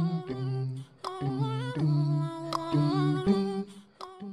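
Background nasheed sung as wordless humming, held notes stepping to a new pitch every half second or so, with a short break about a second in.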